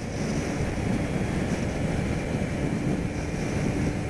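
Wind rushing over the microphone of a Kawasaki Ninja 250R motorcycle at highway speed, with a faint steady engine tone underneath in the second half.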